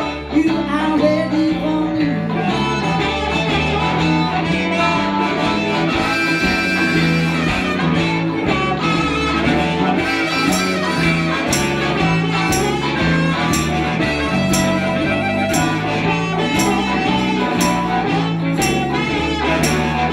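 Live band playing with electric guitars and harmonica over a steady bass line. About halfway through, a regular beat of cymbal strokes comes in, about two a second.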